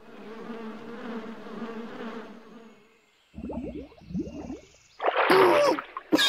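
Insect-like buzzing, as of a fly, for the first two and a half seconds, fading out. It is followed by a few short sliding sounds and a cartoon voice laughing near the end.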